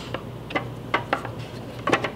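Plastic pads being fitted onto a potter's trimming grip on the wheel head: about five light, separate clicks and knocks of plastic against plastic.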